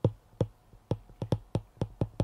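A stylus tip tapping and clicking on a tablet's glass screen while a word is handwritten: a string of sharp, irregular clicks, about a dozen in two seconds.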